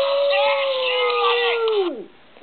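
A beagle's long, drawn-out howl, held steady on one pitch and then dropping away as it stops near the end.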